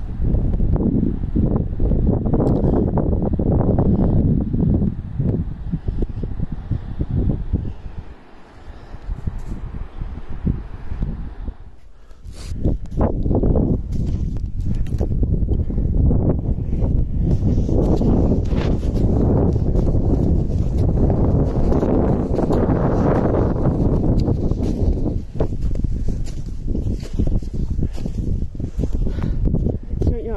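Loud, gusty wind buffeting the phone's microphone, with crunching footsteps on snow and rock under it.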